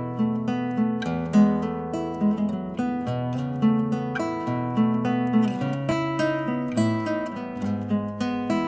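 Background music: acoustic guitar playing a gentle piece, plucked and strummed notes sounding continuously.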